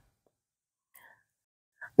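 Near silence in a pause of the voice-over, with a faint, short breathy sound about a second in; the frying in the wok is not heard.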